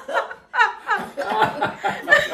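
Hearty laughter in short repeated bursts, with a brief pause about half a second in.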